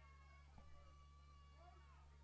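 Near silence: a steady low hum under faint, thin whistling tones that waver in pitch, with a small tick about half a second in.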